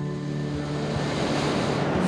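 A long, audible breath in through a close microphone, a hiss that grows louder over about two seconds, with soft background guitar music holding steady notes underneath.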